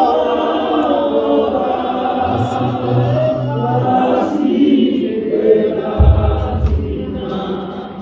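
Church choir singing in harmony, several voices with wavering sustained notes, with a low thud about six seconds in; the singing fades near the end.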